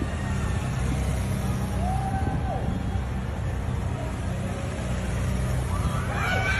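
A motorcade of cars and police motorcycles passing close by, its engines giving a low steady rumble, with faint voices from onlookers.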